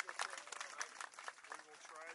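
Scattered hand clapping from a small group, thinning out and dying away, with faint voices underneath.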